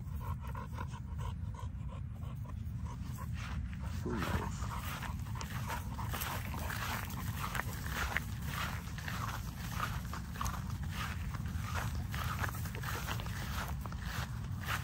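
XL American bully dogs sniffing and panting as they nose through grass, a run of short snuffles and rustles thickening from about four seconds in, over a steady low rumble.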